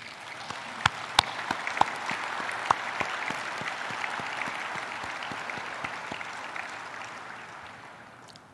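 Audience applauding, swelling over the first two or three seconds, with a few sharper single claps standing out, then slowly dying away toward the end.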